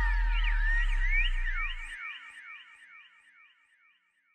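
Background music ending: a deep held bass note stops about halfway through, while a run of short sliding synth tones keeps repeating and dies away like an echo, fading to silence near the end.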